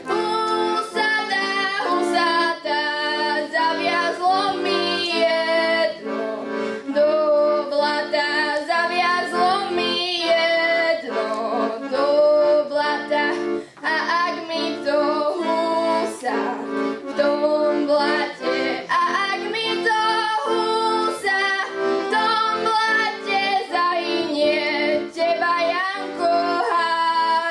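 A girl singing a Slovak folk song into a microphone, with a rhythmic chordal instrumental accompaniment underneath.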